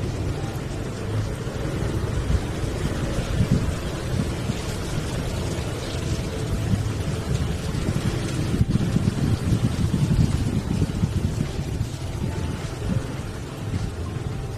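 Motorcycle running at riding speed, a steady low rumble of engine and road noise that rises and falls in level.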